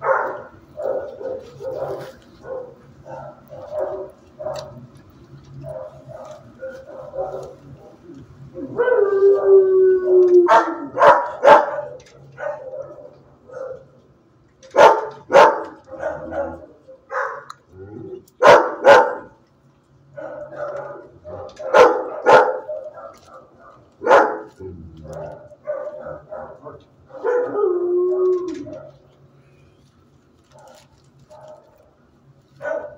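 Several dogs barking in shelter kennels: a steady run of short yaps under sharp, loud barks, with two drawn-out howls, one about nine seconds in and one near the end.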